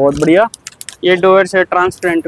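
A man's voice speaking in two short stretches, with light clicks and rattles between them from phone covers in plastic packets being handled on a hanging display.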